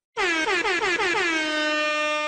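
Air horn sound effect: a rapid run of about six short blasts, each sagging in pitch, then one long held blast.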